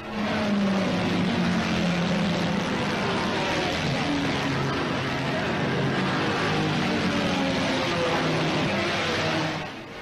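Formula 2 racing car engines at speed: a steady, dense roar with engine notes that fall in pitch as the cars go by.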